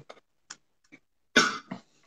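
A single short cough from a man about one and a half seconds in, after a second or so of near quiet with a few faint clicks.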